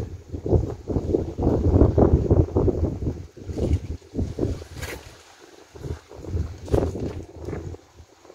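Wind buffeting the microphone in uneven low gusts, dropping to a lull a little past the middle and picking up again near the end.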